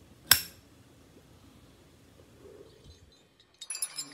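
A single sharp metallic clink with a short ringing tail, a third of a second in: a metal lighter snapping shut after lighting up. Near the end, high glassy tinkling sounds start up.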